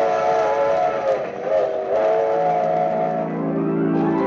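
Steam locomotive whistle sound effect: a long chord of several tones held steady, wavering in pitch about halfway through. Organ music enters low underneath in the second half.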